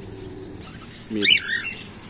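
A cockatiel gives one short, quick up-and-down chirping call about a second in.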